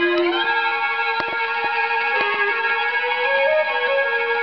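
Dance orchestra instrumental playing from a 78 rpm shellac record on a horn gramophone, with sustained held notes and a rising slide near the start. A few faint clicks sound over the music.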